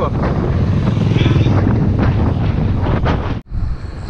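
Wind noise on the microphone of a camera riding on a moving bicycle, mixed with road traffic. The sound cuts off abruptly about three and a half seconds in, then carries on quieter.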